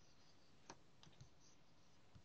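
A few faint clicks from a computer's controls in a near-silent room: three or four light clicks, the clearest about two-thirds of a second in.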